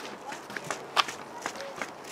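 Footsteps on a paved path: about six light, uneven steps at a walking pace.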